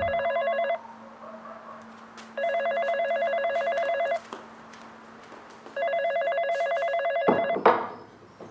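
Corded landline telephone ringing in trilled bursts of about a second and a half with similar pauses: the tail of one ring, then two full rings. Near the end the last ring is cut off by a clatter as the handset is lifted.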